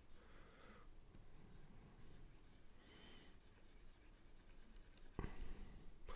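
Faint scratching of a stylus drawn across a drawing tablet as brush strokes are painted, with a short louder rustle near the end.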